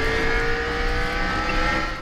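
Race car engine running at speed: a steady engine note whose pitch rises slightly, cutting off abruptly near the end.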